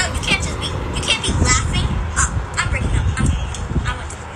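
A girl's voice talking, the words indistinct, over a steady low rumble.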